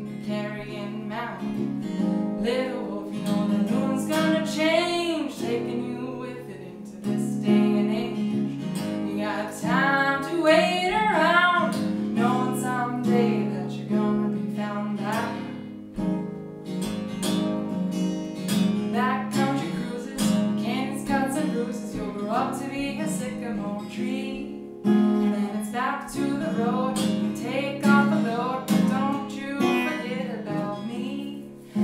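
Live solo performance: a capoed acoustic guitar strummed and picked steadily, with a woman singing over it in phrases separated by short guitar passages.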